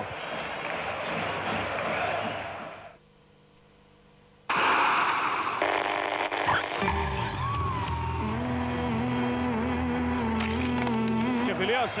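Arena crowd noise that fades out over about three seconds, a second and a half of near silence, then a TV advertisement that cuts in suddenly with a loud rush of noise and goes on with music and a voice.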